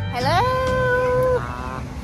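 Background country music: a steel guitar note slides up and holds for about a second before fading, over a low bass.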